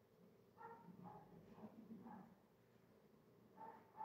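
Near silence, with a few faint high-pitched animal-like whines or yelps in the background: a cluster about half a second to two seconds in, and another near the end.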